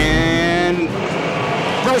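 A pack of dirt modified race cars accelerating under power on a restart, the engines making a continuous roar, with one engine's note rising slightly in pitch during the first second.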